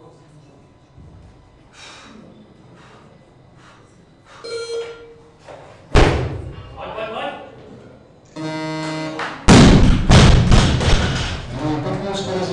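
Olympic-lifting snatch on a competition platform: a sharp impact about six seconds in as the barbell is caught overhead, then a steady buzzer for about a second, the down signal that the lift is complete. Right after it, the loudest sound: the loaded barbell dropped onto the platform with a heavy thud and rattling plates, with voices around it.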